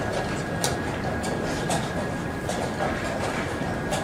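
Steady noise of a large playing hall with a faint steady high whine, broken by irregular sharp clicks about every half second, typical of chess pieces being set down and clock buttons being pressed in blitz games.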